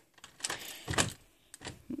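A door handle and lock being worked by hand: a few separate clicks and knocks.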